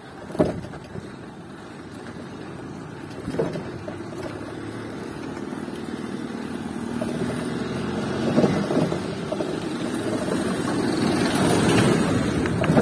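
A motor vehicle's engine grows steadily louder over the second half as it comes up alongside. A few sharp knocks come from the ride over the street.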